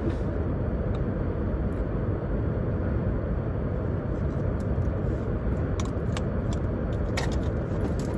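Steady low rumble of road and engine noise inside a moving car's cabin, with a few faint clicks.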